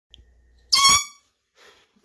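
A handheld canned air horn gives one short, loud blast of about a quarter second.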